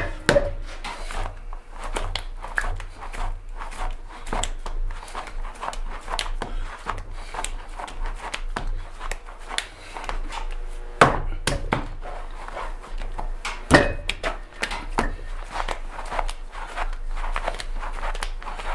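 A lump of soft throwing clay being wedged by hand on a table: irregular pats, presses and slaps of the clay against the tabletop, with two louder thumps about 11 and 14 seconds in.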